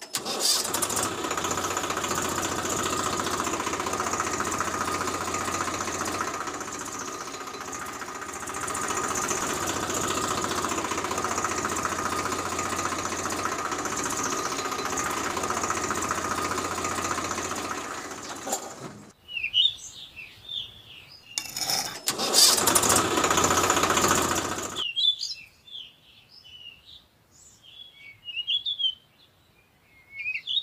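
Small electric motor and gears of a miniature toy tractor whirring steadily as it drives, stopping about 19 seconds in and running again for about three seconds a little later. Birds chirp in the quiet gaps.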